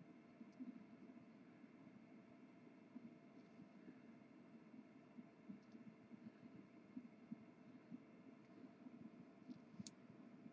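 Near silence: faint room tone with a low hum, scattered faint ticks and one short click near the end.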